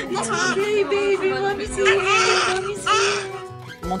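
A newborn baby crying in bursts, with a woman crying and whimpering alongside, over background music that holds one long low note.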